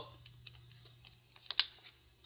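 A few faint clicks and taps, the loudest a quick pair about one and a half seconds in.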